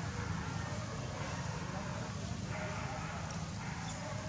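Outdoor background of faint, indistinct voices over a steady low rumble.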